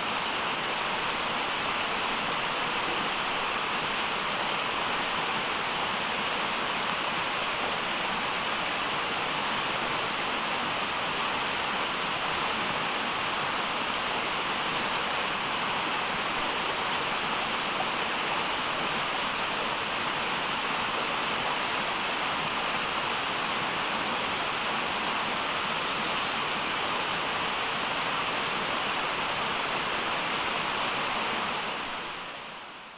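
Steady rain falling on the forest, an even hiss with no breaks.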